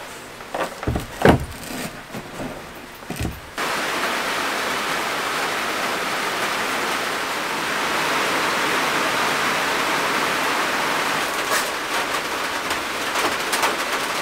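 A few light knocks, then heavy rain falling steadily on a van's metal body and windows, heard from inside the van; the rain comes in abruptly about three and a half seconds in.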